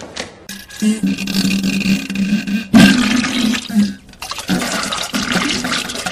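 A toilet flushing: loud rushing water that stops and starts again abruptly three times, the second start the loudest, with a held low tone underneath.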